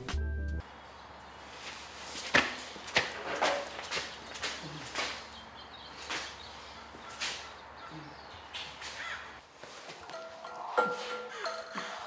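Faint scattered taps and knocks of a person moving about, then background music with held notes comes in about ten seconds in.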